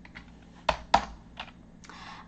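Keystrokes on a computer keyboard: a few separate key presses, two of them louder, a little before and at about one second in.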